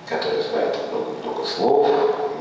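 Two drawn-out, whining dog-like cries, the second louder.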